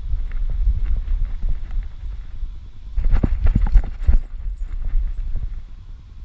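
A body-mounted camera on a running dog jostles with each stride, over a steady low rumble of wind and handling noise. About halfway through comes a quick string of thumps and rattles from paws striking dirt and dry leaves.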